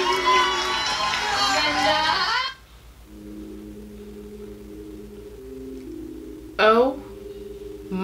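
A female singer's live ballad with band accompaniment, the voice sliding through held notes, cuts off about two and a half seconds in. Quiet held chords follow, and near the end comes a short, loud vocal exclamation whose pitch swoops up and down.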